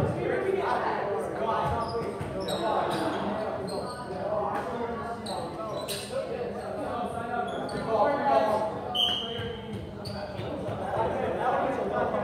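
Indistinct chatter of volleyball players and spectators, echoing in a large gymnasium. Scattered sharp knocks are heard throughout, such as a ball bouncing on the floor, and a brief high-pitched tone comes about nine seconds in.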